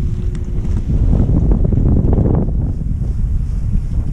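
Wind buffeting the microphone of a camera riding an open chairlift: a loud, steady low rumble with no distinct events.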